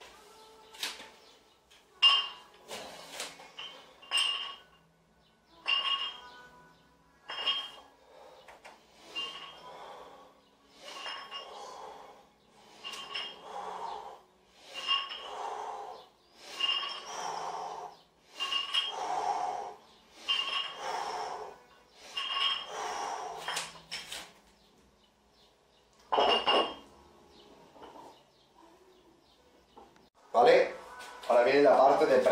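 Metal plates of a pair of dumbbells clinking with each repetition of a lateral raise, about one ringing clink every two seconds. Near the end there is a louder knock.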